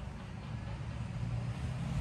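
A road vehicle passing, heard as a low engine rumble that grows slightly louder.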